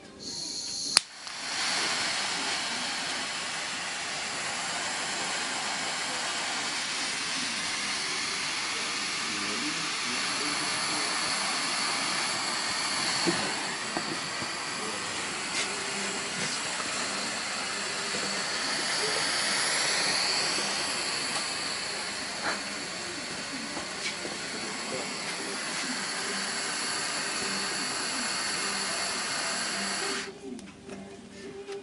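Topex 44E106 mini butane torch: gas starts to hiss, a sharp click of the piezo igniter comes about a second in, then the jet flame burns with a steady hiss. The hiss swells briefly about two-thirds of the way through and stops right at the end.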